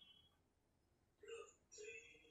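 Near silence, with a faint voice-like sound twice in the second half, each with a short held note.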